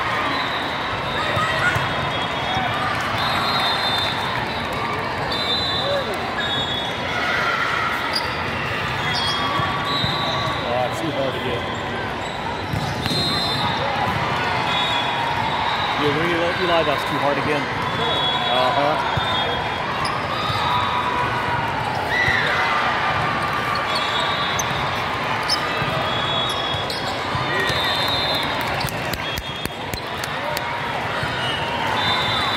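The hubbub of a busy indoor volleyball tournament hall: many voices chattering and calling over one another, with volleyballs being struck and bouncing on the courts.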